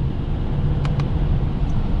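Subaru Outback (BR) engine and drivetrain heard inside the cabin, pulling steadily while held in third gear in paddle-shift manual mode, where the transmission does not shift up by itself. Two light clicks come about a second in.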